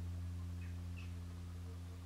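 Low, steady electrical hum with evenly spaced overtones, with two faint, brief high chirps about half a second and one second in.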